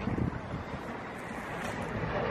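Wind on the camera microphone: a steady, low rumbling hiss.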